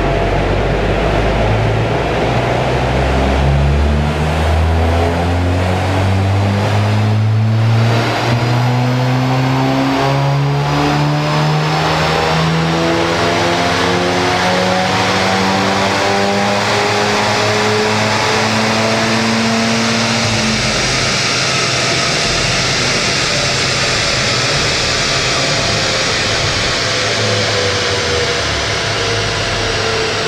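Cupra Leon ST 290's turbocharged 2.0-litre four-cylinder, with a modified stock exhaust and an aftermarket VWR intake, pulling at full load on a rolling-road dyno, its revs climbing steadily for most of twenty seconds. About twenty seconds in the engine note drops away, leaving the rush of the spinning tyres and dyno rollers as they slow.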